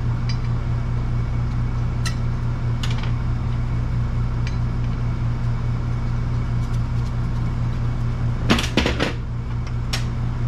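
Metal tools and brake parts being handled on a workbench: a few light metallic clicks, then a quick cluster of sharp clanks near the end. A steady low hum runs underneath throughout.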